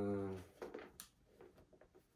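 A man's short, drawn-out hesitation sound, then a faint click about a second in and soft rustling as a black suede sneaker is turned over in his hands.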